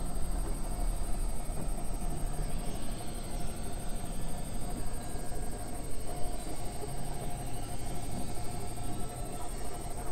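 Experimental electronic drone music: a dense low rumble and hiss with a steady held tone in the middle range, no beat.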